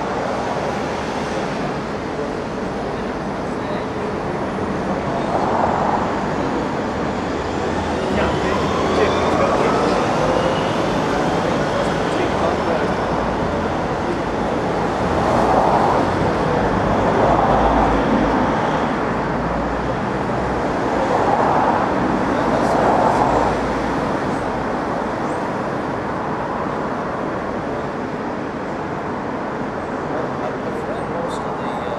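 Steady street traffic noise, swelling a few times, with indistinct voices mixed in.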